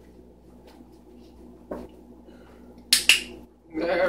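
Two sharp clacks in quick succession about three seconds in, with a lighter click before them: the dog's front paws and nails landing on a hard rubber-and-plastic pivot perch.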